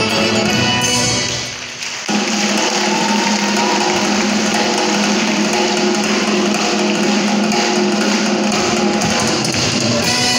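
Live accordion music with percussion, a fast dance tune. It drops away briefly about one and a half seconds in, then comes back fuller about two seconds in.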